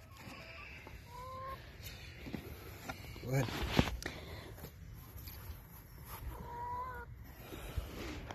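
A chicken calling twice, each a short level-pitched note, about a second in and again near the end. Halfway through, a brief loud scuff from handling the box and camera.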